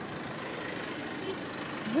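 Steady road traffic noise, an even rumble and hiss of passing vehicles.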